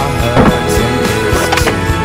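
A skateboard landing on concrete with one loud clack about half a second in, over guitar-driven music.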